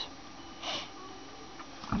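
Quiet room tone with one short breath from a person a little before halfway.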